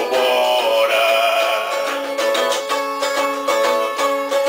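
A man singing while strumming a cavaquinho, a small four-string Brazilian guitar. He holds one long note in the first half, then the strummed chords carry on in a steady rhythm.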